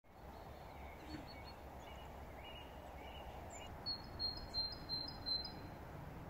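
Small birds chirping and singing, faint short high calls throughout and a louder run of quick high chirps in the second half, over a steady low background rumble.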